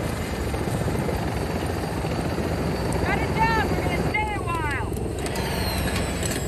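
Helicopter rotors and engine running steadily in a film soundtrack, with two short runs of high falling chirps about three and four seconds in.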